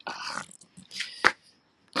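A dog making short, noisy vocal sounds: a burst at the start and a shorter, louder one about a second in.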